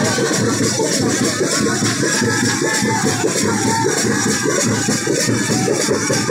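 Several folk drums beaten in a fast, continuous rhythm, loud and without a break.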